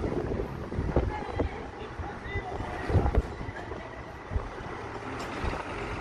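Wind buffeting the phone's microphone over outdoor street and vehicle noise, with faint distant voices and a few sharp knocks.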